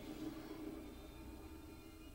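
Quiet animated-film soundtrack playing through a television: a low, steady held tone that fades away, over a faint low hum.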